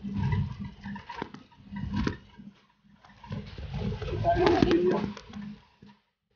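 Indistinct talking in short bursts over low rumble from a vehicle moving on an expressway.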